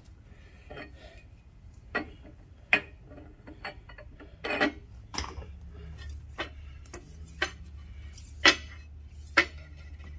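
Light metallic ticks and clinks, scattered a second or so apart, as a steel feeler gauge and straight edge are worked against the freshly milled face of steel angle iron to check it for flatness. A low steady hum gets louder about halfway through.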